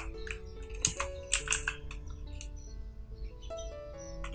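A few scattered computer keyboard keystrokes, typing a short word, over quiet background music of sustained notes.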